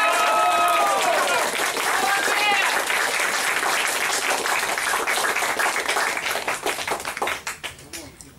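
An audience applauding as a song ends, with a woman's voice carrying over the clapping in the first second and again briefly about two and a half seconds in. The applause thins out and dies away near the end.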